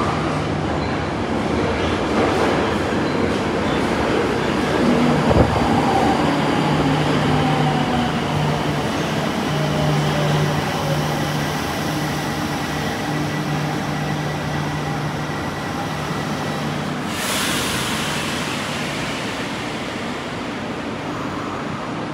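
Tokyo Metro Marunouchi Line 02-series train running into an underground station and braking to a stop. Its motor whine falls in pitch as it slows, over a steady low hum. There is a sharp click about five seconds in and a short hiss as it comes to rest.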